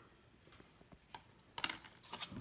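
Faint handling sounds of a gloved hand and paper towel on the tray's rim: a single light click about a second in, then a brief rustle of clicks shortly before the end.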